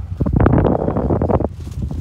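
Strong wind buffeting the phone's microphone: a loud, rumbling gust for about the first second and a half, then easing off.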